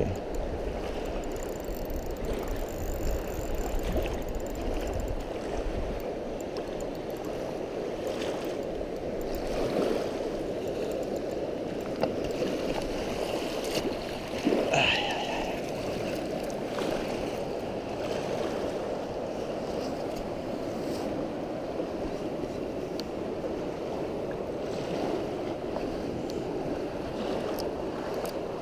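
Steady rush of a fast-flowing river, with one brief louder sound about halfway through.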